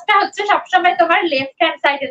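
A woman speaking continuously, explaining a lesson at a normal talking pace.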